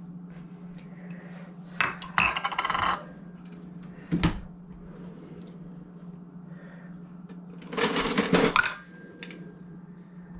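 Kitchen clatter: plastic cups and containers knocking and rattling against a plastic mixing bowl as ingredients are poured in. There are a couple of single knocks and two short bursts of clattering, one about two seconds in and one near the end, over a steady low hum.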